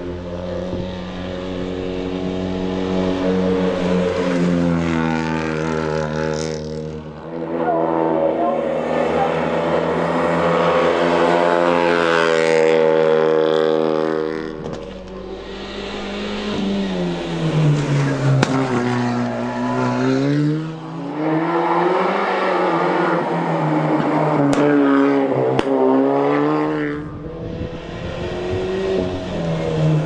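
Suzuki Swift Sport Hybrid rally cars' turbocharged four-cylinder engines revving hard. The pitch climbs through the revs and drops sharply at gear changes around 7 and 14 seconds in. Later the revs rise and fall repeatedly as the drivers lift off and get back on the throttle through tight bends.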